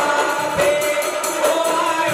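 Ghumat aarti: men singing a Konkani devotional aarti in chorus, accompanied by ghumat clay-pot drums and small brass hand cymbals beating a steady rhythm.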